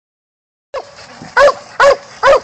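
A young black and tan coonhound barking at a raccoon caged in a wire trap: two short, loud barks in quick succession about a second and a half in, after a soft first sound.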